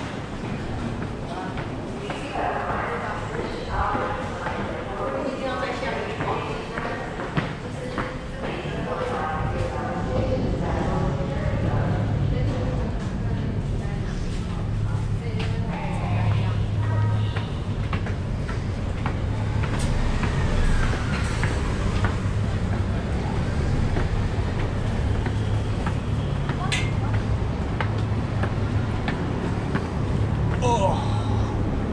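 Ambience of an underground station passage: background voices and footsteps on concrete stairs. About ten seconds in, a steady low rumble of city traffic rises as the stairs lead up to street level.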